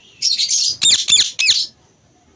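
Yellow (lutino) Indian ringneck parakeet squawking loudly: a harsh high burst, then three sharp, high-pitched calls in quick succession, each falling in pitch.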